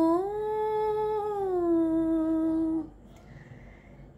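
A woman's solo voice, unaccompanied, holding one long sung note that lifts slightly and then slides down to a lower pitch before breaking off after about three seconds, leaving a short pause.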